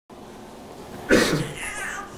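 A brief vocal sound starts suddenly about a second in and fades out, over quiet room tone.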